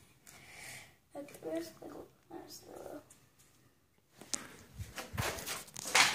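Quiet, low speech, then a few light knocks and handling noises near the end.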